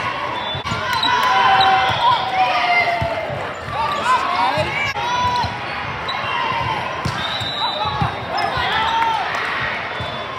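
Indoor volleyball play echoing in a large sports hall: the thuds of balls being hit and bouncing on the court, short squeaks from shoes on the floor, and many overlapping voices of players and spectators.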